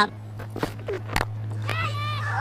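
A cricket bat striking the ball once, a single sharp crack a little past halfway, over a steady low hum in the broadcast audio. Near the end a voice rises in an excited cry as the return catch is taken.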